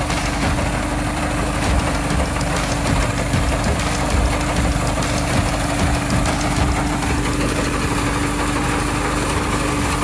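Mini rice combine harvester's engine running steadily under load as the machine cuts and threshes rice, a constant droning note with no change in speed.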